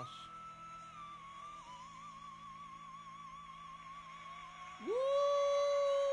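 A male singer holds one long, high note with vibrato over steady backing music, ending a stage duet. About five seconds in, a man lets out a loud, rising "woo!" that drowns out the song.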